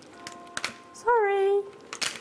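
A few light clicks, then about a second in a short wordless vocal sound from a woman's voice: a quick rise in pitch, then a note held for about half a second.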